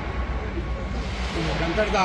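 Steady outdoor background noise with a constant low rumble. A man's voice comes in faintly in the second half and picks up near the end.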